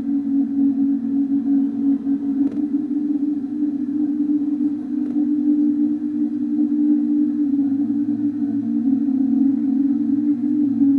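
Ambient electronic drone: a steady low hum of several close tones that waver and beat against each other without a break.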